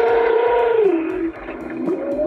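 Recorded whale call played through a Google Home Mini smart speaker. A long held tone drops in pitch about a second in, and a second call rises near the end.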